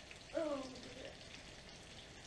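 Faint, steady sizzling of a frying pan on the hob, garlic mushrooms cooking, with a woman's short "Oh" about half a second in.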